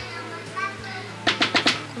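Four quick, sharp knocks a little over a second in, as a paper carton of creamed corn soup base is emptied into a saucepan, over light background music.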